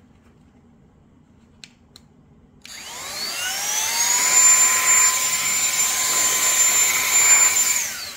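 OPOLAR cordless electric air duster spinning up a little under three seconds in with a rising whine, then running steadily at full speed with a high whine over the rush of air. Its motor begins winding down at the very end.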